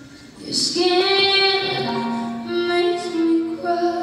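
A woman's lead vocal sung live through a PA, in long held notes that begin about half a second in. The sound is a little muffled because it was recorded on a phone in the audience.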